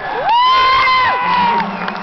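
A loud, high-pitched whoop from a spectator close by: one long call that rises, holds and then falls over about a second and a half, over a crowd cheering.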